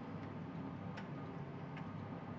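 A steady low hum with a light tick repeating about every 0.8 seconds.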